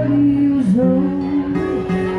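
Live acoustic music: an acoustic guitar strummed under a woman singing, her long held notes bending in pitch.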